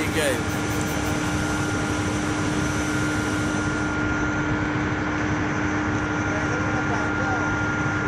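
Steady drone of power-house machinery: a constant low hum with a steady higher whine over it, unchanging throughout.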